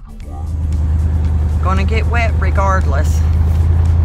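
Steady low rumble of a pickup truck driving on a rough dirt road, heard from inside the cab, swelling up in the first second as background music fades out. A woman's voice talks over it from about halfway through.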